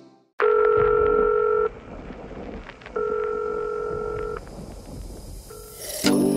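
A telephone ringing tone: two steady beeps of about a second and a half each, a similar pause between them, and a short third beep near the end, over faint crackle and clicks.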